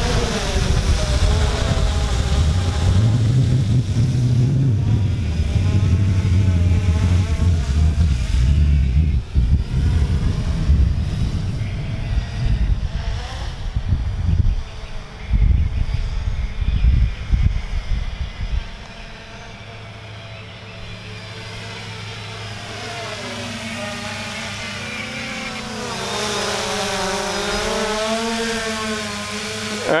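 3DR Solo quadcopter's propellers buzzing in flight, the pitch wavering up and down as the motors speed up and slow to steer. For the first half a low rumble of wind on the microphone covers it. After that the buzz is clear and grows louder near the end as the drone comes closer.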